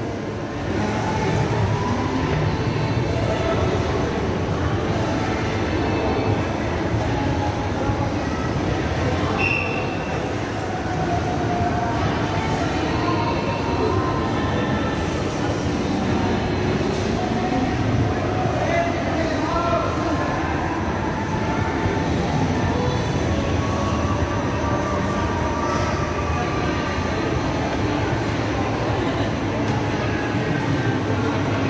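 Escalator running with a steady mechanical rumble, mixed with the indistinct chatter of people around it.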